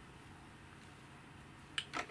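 A quiet pause, then a short sharp plastic click near the end as an XT60 battery plug knocks against the charger's output socket while being lined up to plug in.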